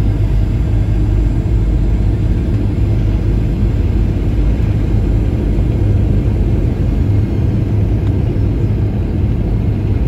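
Cabin noise in a Boeing 737-900ER on short final and over the runway: a steady low rumble of the CFM56-7B turbofan engines and airflow, heard from a window seat just ahead of the engine.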